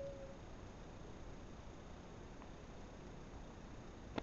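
Near quiet: room tone and recording hiss, with a brief faint vocal sound at the very start and a faint tick a little past halfway.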